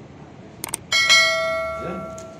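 Subscribe-button sound effect: a quick double click, then a bright notification-bell chime about a second in that rings on and fades out.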